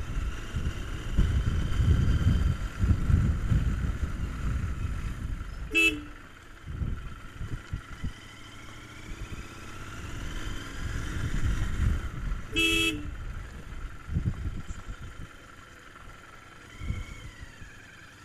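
Royal Enfield Continental GT 650 being ridden, its engine and the wind on the microphone making a low rumble that swells for the first few seconds and again around ten to thirteen seconds. Two short horn beeps sound, about six seconds in and near thirteen seconds, the second slightly longer.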